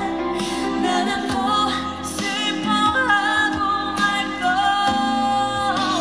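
Female vocalist singing live into a handheld microphone with musical accompaniment, heard through a stage sound system; her held notes bend and glide in a slow melodic line.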